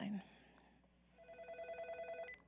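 A telephone ringing: one short, rapidly pulsing electronic trill at a steady pitch, lasting about a second and starting a little past halfway.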